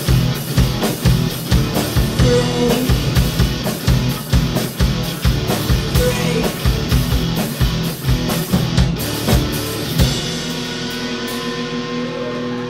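Live rock band playing: two electric guitars, bass guitar and drum kit pounding out a steady beat. About ten seconds in the drums stop and the guitars and bass ring on with held notes.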